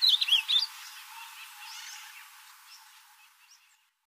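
Ultramarine grosbeak (azulão) singing: the last notes of a fast warbling phrase of rising-and-falling whistles, ending under a second in. After it, only faint chirps remain, fading out.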